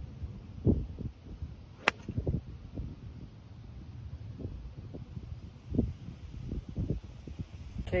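A five-iron striking a golf ball off the grass: one sharp crack about two seconds in. Wind rumbles on the microphone throughout.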